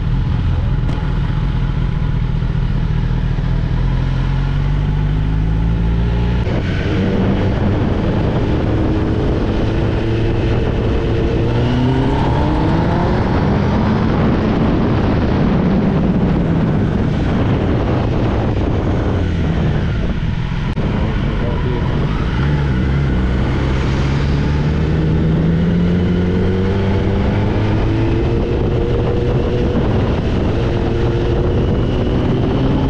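Kawasaki Ninja ZX-10R inline-four, fitted with a full-system exhaust with the catalytic converter removed, heard while riding. It runs steadily at first, then from about six seconds in the revs climb and drop back several times as the bike pulls through the gears.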